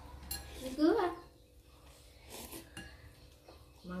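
Wooden chopsticks making a few light clinks and scrapes against a glass bowl of noodle soup as noodles are lifted out.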